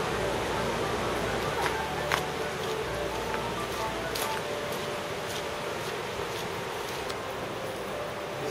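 Steady rush of fast-flowing water, with a few light footsteps on wet gravel.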